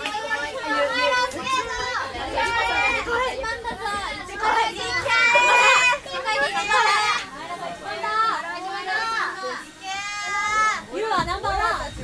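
Several girls' voices talking over each other at once: high-pitched, excited chatter with squeals, too tangled for single words to stand out.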